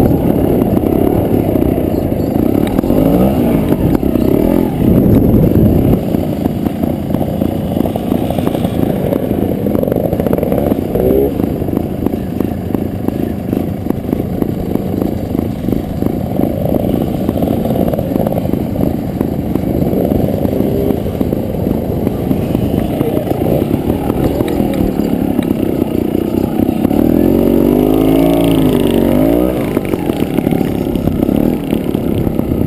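Trials motorcycle engine running close to the microphone at low speed over rough ground, its note rising and falling several times as the throttle is blipped, most plainly a few seconds in, around ten seconds in, and in a long rise and fall near the end.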